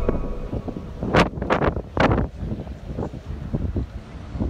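Wind buffeting the microphone on an open ship deck: a steady low rumble with several sharp gusts in the first half.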